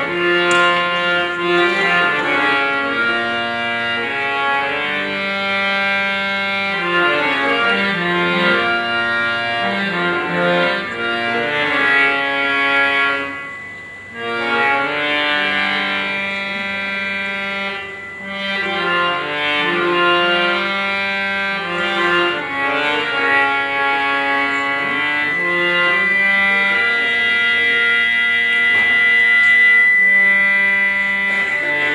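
Harmonium playing a flowing melodic line in Indian classical style, the notes stepping up and down. It drops away briefly twice, about 13 and 18 seconds in.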